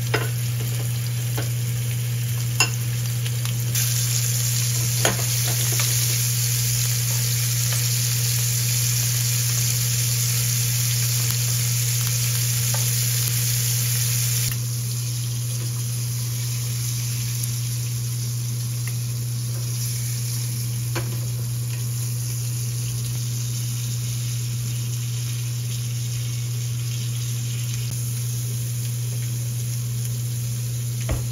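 Octopus sizzling as it fries in butter in a pan, with a few sharp clicks of metal tongs against the pan; the sizzle swells a few seconds in and then stops suddenly about halfway through. A steady low hum runs underneath, with an occasional light clink later on.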